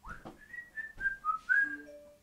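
A short whistled tune of about five held notes that step down in pitch and then jump back up, opening with a quick sliding note. Lower steady tones come in near the end.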